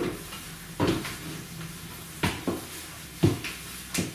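Footsteps as a woman turns round on the spot: five dull thumps at uneven intervals, the loudest a little past three seconds in.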